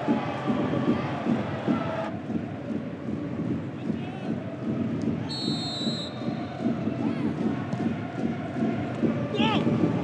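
Football match sound: a continuous murmur of voices and crowd-like noise, with a short referee's whistle blast about five seconds in and a player's shout near the end.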